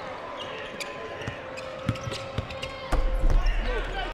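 Basketball dribbled on a hardwood arena court, bouncing about twice a second over arena crowd noise. A loud low rumble sets in near the end.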